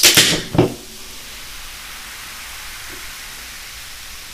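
Two shaken cans of Coca-Cola pulled open together: a loud burst of escaping gas at the start and a second short burst about half a second in. Then a steady fizzing hiss as the foam spills over the tops.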